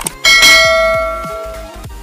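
Notification-bell sound effect for the 'press the bell icon' animation: a short click, then one bell ding that rings out and fades over about a second and a half, over background music.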